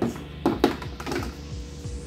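Several light knocks and taps of a doll and toy pieces against a wooden dollhouse, mostly in the first second, over music playing in the background.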